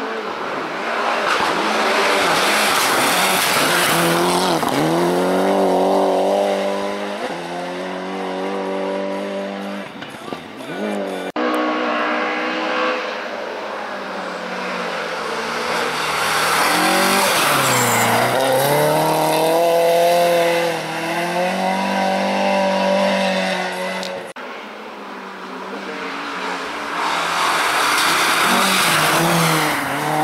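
Rally car engines revving hard on an icy stage. The note climbs, drops with each gear change or lift of the throttle, and climbs again, swelling as a car comes close.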